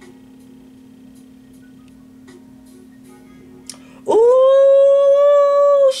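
A woman's voice holding one long high note for about two seconds, starting suddenly about four seconds in, over a faint steady hum.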